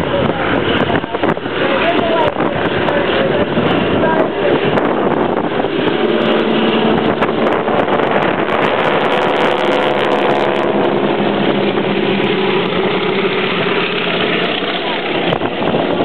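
Boeing Stearman biplanes in formation flying overhead, their radial engines droning under heavy wind noise on the microphone. The steady engine tone stands out most in the middle of the stretch as the aircraft pass.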